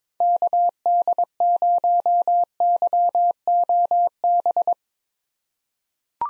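Morse code at 22 words per minute, sent as a single steady beep tone keyed in short and long elements, spelling the call sign KD0YOB (-.- -.. ----- -.-- --- -...). The keying stops about three quarters of the way through.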